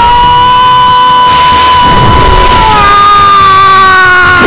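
An anime character's long power-up scream, held on one high note, stepping up to a higher pitch a little under three seconds in.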